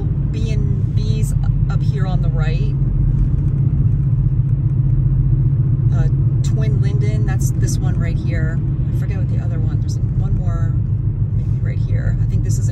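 Steady low drone of engine and tyre noise from a car driving along a road, heard from inside the car.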